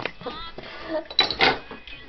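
Handling noise from a handheld camera being moved about: a click at the start and a few louder knocks and rustles about a second and a half in, with faint voices underneath.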